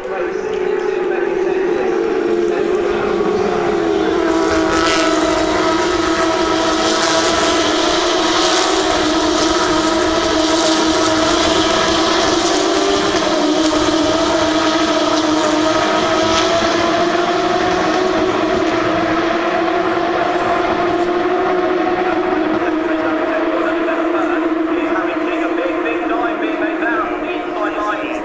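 Porsche 911 GT3 Cup race cars with flat-six engines running at high revs in a pack, one continuous engine note with slight, slow changes in pitch. A scatter of sharp clicks comes between about five and fourteen seconds in.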